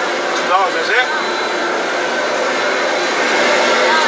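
A steady, loud rushing noise, with a brief snatch of voice about half a second to a second in.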